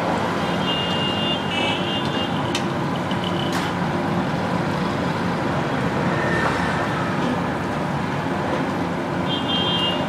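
Steady sizzle of samosas deep-frying in a large kadai of hot oil, with a few short high beeps near the start and again near the end.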